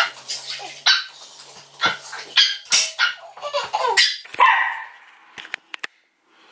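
A dog barking in a run of short, sharp barks, impatient for its food to be served, which it does at every feeding. A few faint clicks follow near the end.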